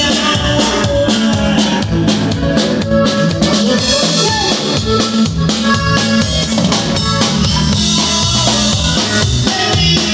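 Norteño band music with a steady drum-kit beat, snare and bass drum prominent over a moving bass line.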